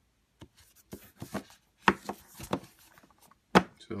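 Plastic Blu-ray cases and a cardboard slipcover handled close to the microphone: a run of sharp clicks, taps and rubs, loudest about two seconds in and again near the end.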